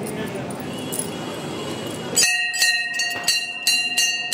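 A murmur of many voices, then a little past halfway a metal temple bell rung over and over, about three strikes a second, its clear tones ringing on between strikes.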